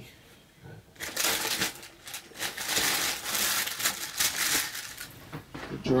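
Tissue paper crinkling and a cardboard shoebox being handled: a dense run of rustles and light knocks that starts about a second in and lasts about four seconds.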